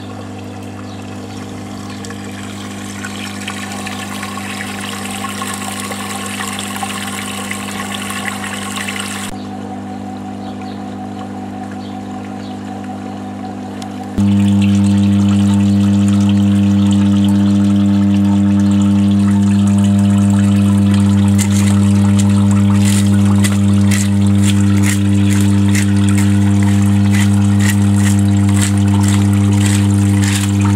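Steady electrical hum from the transformer plant, with water running through the oil separator in the first third. About halfway through the hum jumps louder, and in the last several seconds there are rapid splashes and scrapes as a stick clears leaves from a blocked drain grate.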